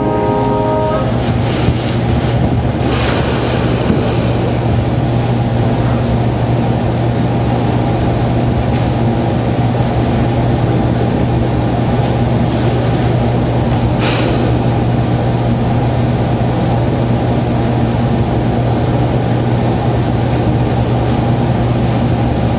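A piece of music stops about a second in, leaving a steady, fairly loud low rumble with a hum under it, and brief faint rustles about three and fourteen seconds in.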